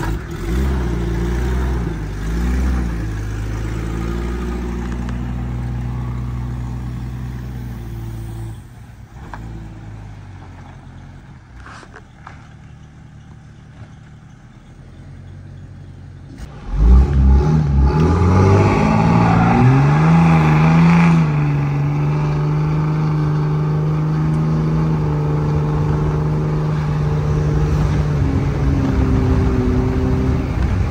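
1996 Jeep Cherokee XJ engine revving: several blips in the first few seconds, then it dies down. About seventeen seconds in it rises sharply and is held at high revs, steady, for the rest of the stretch.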